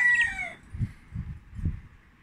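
Rooster crowing: the end of a crow, its pitch sliding down and cutting off about half a second in. A few soft low thumps follow.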